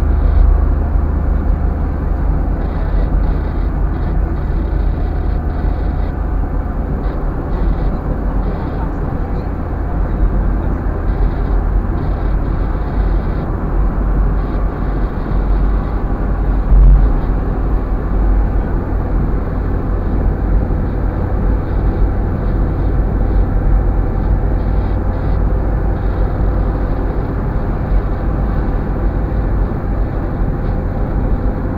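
Steady low rumble of a car's engine and tyres heard inside the cabin while driving, with a single thump about two-thirds of the way through.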